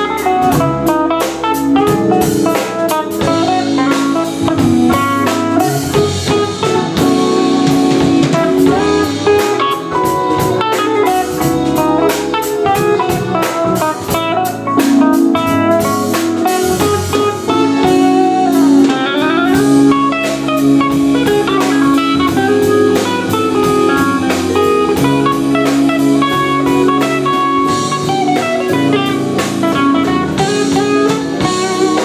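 Live jazz band playing, with an electric guitar out in front over a drum kit and a vibraphone.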